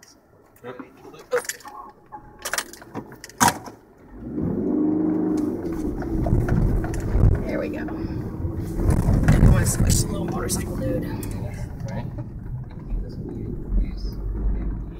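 Car heard from inside the cabin: a few sharp knocks and rattles while it rolls slowly across a bridge. From about four seconds in, the engine and road noise grow loud and stay loud as the car pulls off the bridge and starts up a very steep dirt road.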